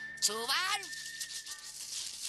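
Cartoon soundtrack: a short wordless vocal cry about a quarter second in, over background music with a long high held note that stops near the end.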